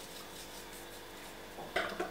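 Quiet kitchen room noise with a metal spoon faintly stirring a thick sour-cream sauce in a ceramic bowl.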